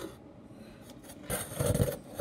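Handling noise: a brief rubbing scrape about a second and a half in, lasting about half a second, as something is moved against the phone or table close to the microphone.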